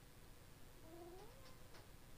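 A pet's faint whine: one short rising cry about a second in, over near silence.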